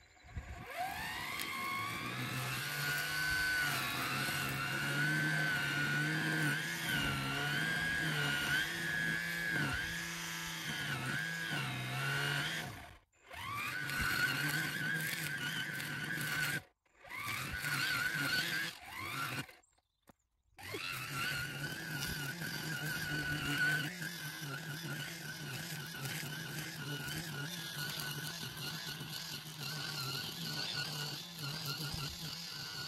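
Battery-powered brush cutter winding up with a rising whine, then running with a wavering pitch as the line cuts through long grass. It stops abruptly three times around the middle and winds back up each time.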